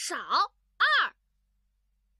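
Cartoon goose honking: two short high-pitched calls within the first second, the first dipping and then rising in pitch, the second a quick rise and fall.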